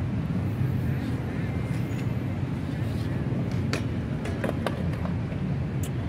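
Steady low rumble of city traffic, with a run of sharp clicks and taps in the second half from skateboard wheels clacking over the paved plaza.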